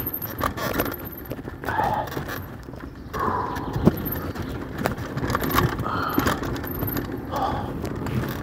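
Enduro mountain bike ridden fast down a rough forest singletrack: a continuous rush of tyre and air noise with irregular clatter and knocks as the bike hits roots and rocks. The sharpest knock comes just before four seconds in.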